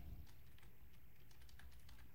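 Faint, irregular light clicks over quiet room tone.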